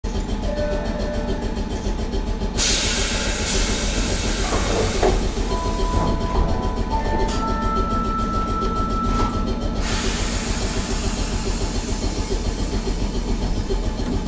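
Keifuku Randen Mobo 621 tram standing at the platform, with a steady low hum from its onboard equipment. A long, loud hiss of air starts a few seconds in and cuts off at about ten seconds.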